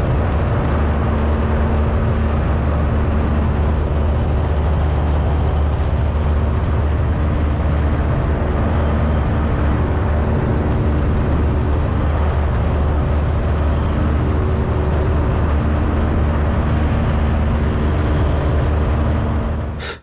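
Piper PA-18 Super Cub floatplane's 150-horsepower four-cylinder engine and propeller droning steadily in cruise, with wind noise over a camera mounted outside the airframe.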